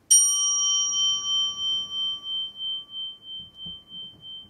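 A small hand-held metal singing bowl struck once with a striker, ringing on with a long, slowly fading tone that wavers in an even pulse about three times a second. Its brightest overtones die away within the first couple of seconds, leaving the lower ring.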